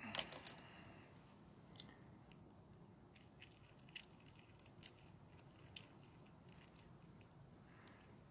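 Light clicks and taps from a small makeup shot glass and containers being handled with long fingernails: a quick cluster of clicks at the start, then scattered faint ticks.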